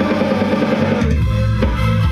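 Live dance music from a small band, with a steady drum beat, bass notes, electronic keyboard and electric guitar.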